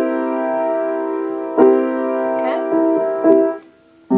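A C seventh chord (C, E, G and B flat) played on a Yamaha piano. It rings from the start, is struck again twice, and is cut off near the end.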